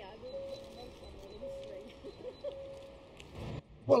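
Soft background music with long held notes that step in pitch now and then. Shortly before the end a brief burst of low rumbling noise.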